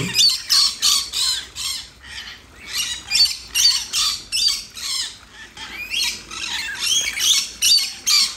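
Rainbow lorikeets screeching over and over, short high-pitched squawks several a second, while they bathe in shallow water.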